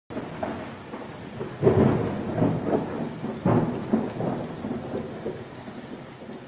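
Thunderstorm: rolling thunder over steady rain, with two loud peals about two seconds apart, each rumbling away.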